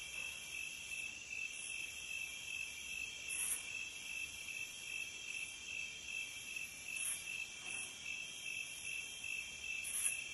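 Steady night chorus of crickets: a high, pulsing trill, with a few brief higher chirps over it every few seconds.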